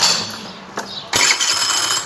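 A 50 cc scooter engine being started with its CVT cover off after a drive-belt change, so the belt and variator are exposed. There is a short burst at the start, then a second, longer one from a little over a second in as the engine catches and runs.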